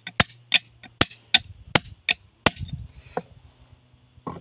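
Hand hammer striking a large stone slab along a crack line, working to split the rock. There are about seven sharp strikes, two to three a second, that stop about two and a half seconds in, followed by lower scuffing and one lighter knock.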